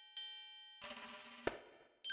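Cartoon sound effects: a bright metallic ding that rings and fades, then a second, noisier ringing burst about a second in that ends with a short knock.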